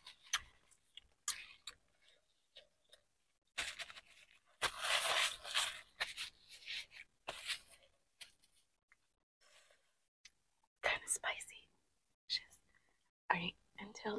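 Hands being wiped with a paper napkin: short, scattered rustles and rubs, with a longer, louder rub about five seconds in.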